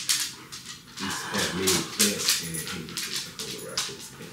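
A dog whining in a run of short, pitched calls starting about a second in, over a scatter of sharp clicks and knocks.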